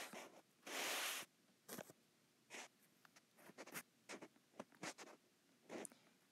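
Stylus drawing on an iPad's glass screen: one long stroke about a second in, then a series of short taps and scratches.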